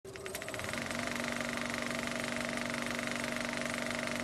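Film projector sound effect: a rapid, steady mechanical clatter with a hum under it.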